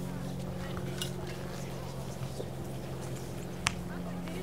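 Steady low mechanical hum of a running engine or machine, with faint distant voices. A single sharp smack comes near the end.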